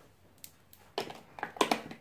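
Quiet room tone with a faint click about half a second in, then a woman says a short "so" about a second in.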